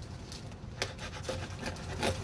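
Faint rubbing and scraping from a cardboard shipping box being worked at by hand, with a few small clicks; the box is resisting being opened.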